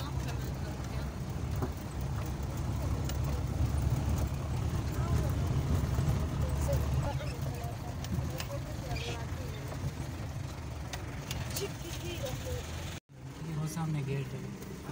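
Jeep engine and tyres on a rough dirt track, heard from inside the cab as a steady low rumble, with faint voices in the background. The sound cuts out abruptly about a second before the end, then comes back.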